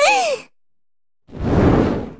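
A cartoon character's short vocal sound falling in pitch, then silence, then a whoosh sound effect that swells and fades.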